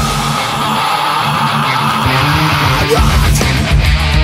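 Stoner metal band recording in which the bass and drums drop out, leaving a distorted electric guitar strumming and ringing on its own. The full band with drums comes back in about three seconds in.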